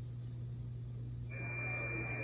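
Low steady hum; about a second and a half in, the Icom IC-746 transceiver's receiver audio comes up through its speaker on the 11-metre CB band in LSB: band hiss with a steady high whistle.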